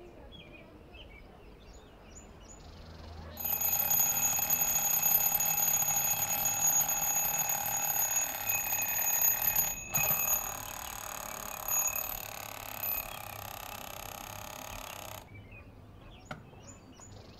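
Twin-bell alarm clock ringing: it starts about three seconds in and rings loudly for about six seconds. It goes on more softly for several more seconds, then cuts off suddenly as it is switched off.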